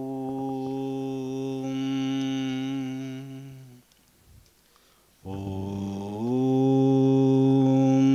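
A man chanting a Hindu mantra in long held tones: one steady tone of almost four seconds, a breath pause of about a second and a half, then a second held tone that steps up in pitch.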